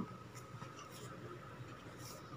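Faint background hiss of room tone, with a few soft ticks in the first second.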